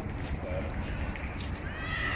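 Crowd voices murmuring across an open football pitch over a constant low rumble, with one raised, gliding voice calling out near the end.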